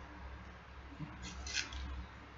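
Hand rubbing over a bristly beard and mouth: a small click about a second in, then a few short, faint scratchy rasps, over a low steady hum.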